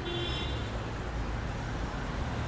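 Steady city traffic noise, an even rumble and hiss of passing vehicles with no distinct events.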